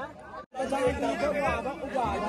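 Speech only: several people chattering, with the sound dropping out briefly about half a second in.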